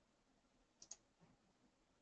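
Near silence, with two faint clicks at a computer close together just before a second in.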